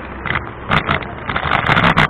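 Bicycle rolling slowly over paving, heard through a bike-mounted camera: irregular rattles and knocks from the bike and camera mount over a rushing noise that gets louder in the second half.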